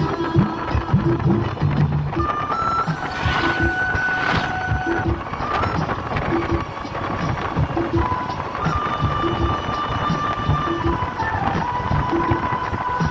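Background music: a held melody line that steps from note to note over a short note repeating about once a second.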